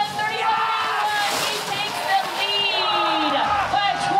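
Shouting voices in a ski race finish area over the hissing scrape of slalom skis braking on hard snow, the scrape strongest about a second in.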